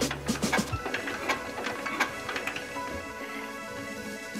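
Single-cylinder diesel engine being turned over by its hand crank, a quick mechanical clatter, heard under background music.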